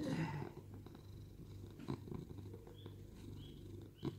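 Domestic cat purring, a low purr that pulses in and out with its breathing.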